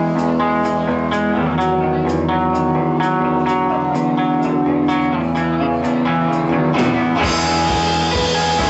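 Live 60s-style psych-pop band playing, led by an electric guitar picking a repeated figure of evenly spaced notes. Near the end the sound fills out and brightens as more of the band comes in.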